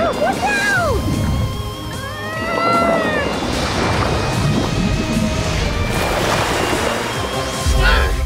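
Cartoon soundtrack: background music over underwater rushing-water sound effects, with a few rising-and-falling whistling tones in the first seconds and a splash near the end.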